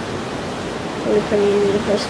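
Steady rushing of ocean surf, with a brief held voice sound about a second in.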